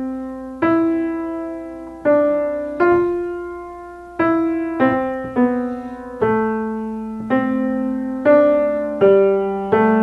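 A 1960 Steinway Model B grand piano, fitted with newer Steinway hammers, played slowly in its middle register: single notes and small chords struck about once a second, each left to ring and fade before the next.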